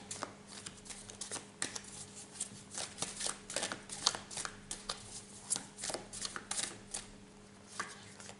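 A deck of tarot cards being shuffled by hand: an irregular run of short card flicks and taps, with a faint steady hum underneath.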